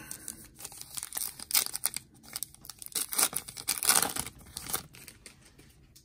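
Foil wrapper of a trading-card pack being torn open and crinkled by hand, in a run of irregular rips and crackles.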